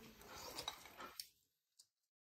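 Faint, scattered clicks of chopsticks against porcelain bowls over low room tone, fading out just over a second in.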